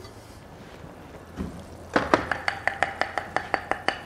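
A kitchen utensil clicking rapidly and evenly against a bowl, about seven light ringing strikes a second, as the roux is stirred ready to go into the stock. The clicks start about halfway through, after a quiet stretch and one small knock.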